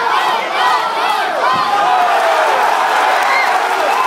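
Crowd of fight spectators shouting and cheering, many voices overlapping at a steady, loud level.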